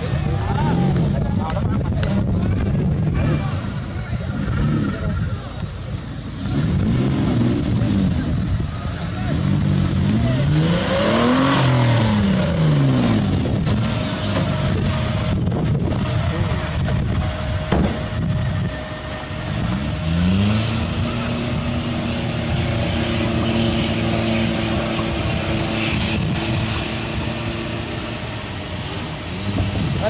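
Engine of a modified off-road 4x4 on big mud tyres revving hard several times, its pitch rising and falling with each blip of the throttle, then held at a steady higher speed for several seconds near the end.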